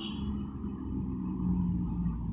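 A motor vehicle's engine running with a steady low hum, growing a little louder about a second and a half in.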